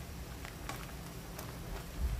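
Metal ladle stirring and scooping broth in a metal soup pot, with a few faint clinks against the pot over a low steady background.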